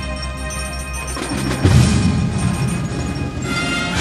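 High school marching band playing a held brass chord, joined about a second and a half in by a loud low drum hit and busy low percussion, with timpani in the mix.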